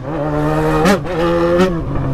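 Yamaha XJ6's inline-four engine running at a steady speed while riding in traffic, with brief small rises in revs about a second in and again shortly before the end.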